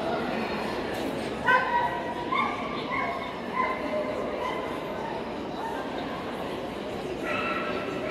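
A dog giving a run of short, high-pitched yips and whines. The loudest comes about one and a half seconds in, several follow over the next few seconds, and another comes near the end.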